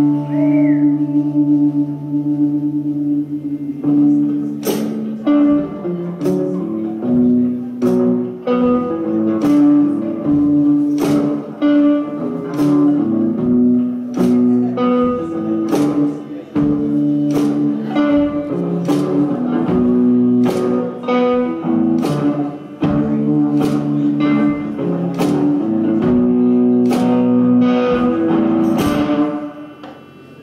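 Live song on guitar, a repeating figure of sustained notes and chords, joined from about four seconds in by a percussion strike roughly every 0.8 s. The music stops shortly before the end.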